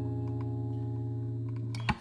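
Acoustic guitar's final chord ringing out and slowly fading, then a couple of sharp knocks near the end as the ringing is cut off.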